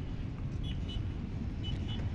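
Steady low outdoor rumble, with a faint high two-note chirp repeating about once a second.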